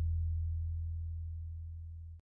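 Low, deep gong-like boom dying away slowly as a single steady tone, the fading tail of a closing sound effect.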